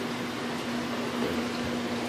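Steady background hum and hiss with one constant low tone, a fan-like room noise that does not change.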